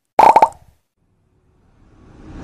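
A quick run of four or five cartoon pop sound effects within about a third of a second, followed by a whoosh that starts to swell near the end.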